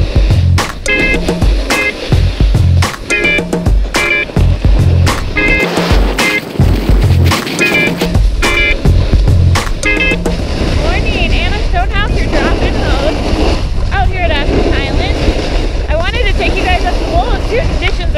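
Background music with a steady beat for about the first ten seconds, then wind rushing over an action camera's microphone and the scrape of packed snow under a rider sliding downhill.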